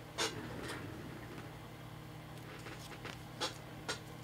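Trading cards and plastic sleeves and top loaders being handled on a table: a few light clicks and rustles, the sharpest about a quarter second in and several more in the last second and a half, over a steady low hum.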